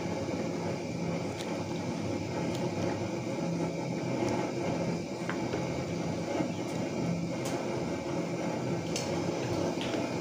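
Steady rumbling of a large aluminium pot of rice and water coming back to the boil on the stove, with a few light knocks of a wooden spoon stirring it.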